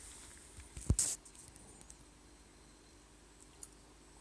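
A single knock about a second in, followed by a short rustle, then quiet room tone with one faint tick near the end.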